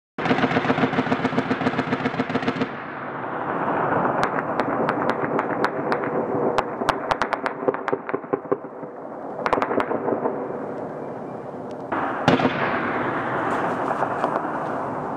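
Automatic gunfire echoing over a town: a long rapid burst for the first couple of seconds, then scattered single shots and short bursts. About twelve seconds in comes a heavier bang that rolls on in a long echo.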